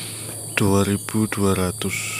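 Steady high-pitched chirring of an insect chorus, heard continuously beneath a man's voice.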